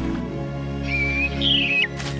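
Music with held notes, over which a bird chirps about a second in: a short level whistle, then a higher, wavering call that drops sharply at the end.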